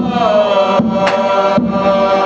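A group of men chanting a Malay selawat in unison, holding long sung notes, with a few sharp strokes on kompang hand frame drums.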